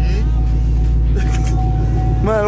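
Chevrolet Camaro's engine idling with a steady low rumble, heard from the open convertible cabin.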